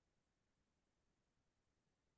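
Near silence: a faint, even noise floor.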